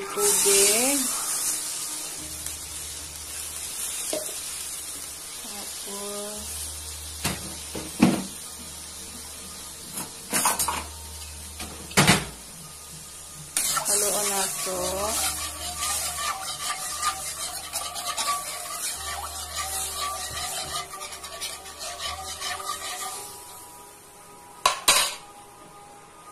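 Sauce bubbling and sizzling in an aluminium wok while a spatula stirs it. The spatula scrapes the pan and knocks sharply against it a few times, around 8, 10, 12 and 25 seconds in.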